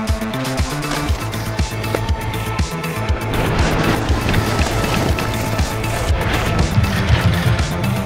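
Edited-in background music with a steady beat and a stepped bass line. A rushing noise swells over it about three seconds in and fades within a couple of seconds.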